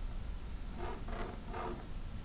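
Pencil drawing a line along a quilting ruler on cotton fabric: three short strokes about half a second apart in the middle, over a low room hum.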